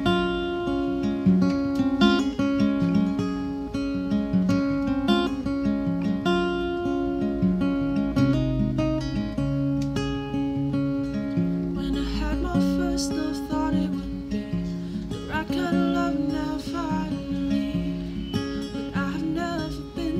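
An acoustic guitar plays a steady pattern of picked and strummed chords as a solo instrumental passage of a live acoustic song. About twelve seconds in, a woman's singing voice comes back in over the guitar.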